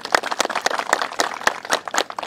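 A group of people clapping in applause: many quick, irregular hand claps overlapping.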